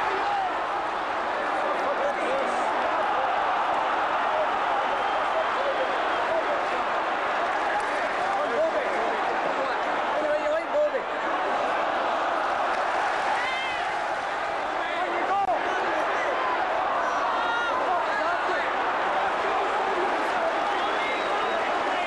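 Football stadium crowd: the din of thousands of fans' voices, heard from the stand through a camcorder microphone, with single shouts rising above it now and then.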